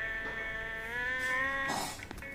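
A long held sung note from a song, one steady pitch drifting slightly upward. It breaks off shortly before the end with a brief burst of hiss.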